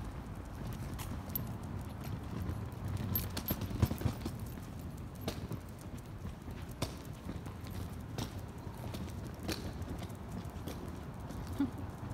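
Footsteps clicking on a concrete sidewalk, a sharp tap about every second and a half, over a steady low rumble of street noise.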